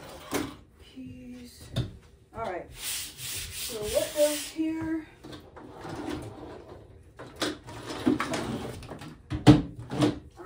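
Toiletry bottles and barber items being handled on a folding table: scattered clicks and knocks as things are picked up and set down, with a stretch of rubbing noise about three to four seconds in. A low voice mutters briefly.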